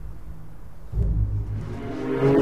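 Low rumbling drone of a suspense film score, swelling about a second in, with higher sustained tones entering near the end.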